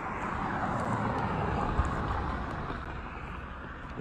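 A road vehicle passing close by, its noise swelling over the first second or two and then fading away.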